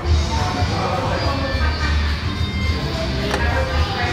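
Background music with a strong, pulsing bass line and sustained melodic notes, with indistinct voices under it.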